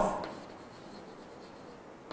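Chalk writing on a blackboard: faint scratching as letters are written. A man's voice trails off at the very start.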